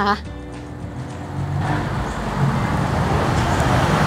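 Tom yum soup simmering in a pot on a portable gas stove: a bubbling, hissing noise that starts about a second and a half in and grows steadily louder.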